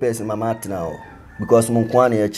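A man talking in Twi, in short phrases with a brief pause about halfway through.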